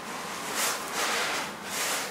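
Palms rubbing in circles over trouser fabric on the knees, a soft rubbing that swells and fades a few times.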